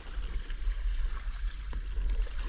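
Kayak paddle strokes: water splashing and dripping off the blade with small scattered ticks, over a constant low rumble.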